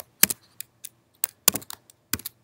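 Keystrokes on a computer keyboard: about ten irregular, sharp key clicks in two seconds.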